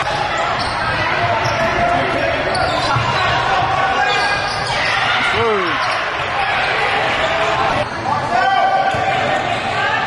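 Live sound of an indoor basketball game: a basketball bouncing on the hardwood court and players' and spectators' voices carrying in a large gym, with a short squeal falling in pitch about halfway through.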